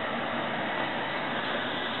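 Ferrari Testarossa's 4.9-litre flat-12 idling, heard close in the open engine bay as a steady, even rush with no change in revs.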